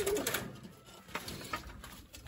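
Domestic pigeons cooing briefly at first, then a few faint knocks.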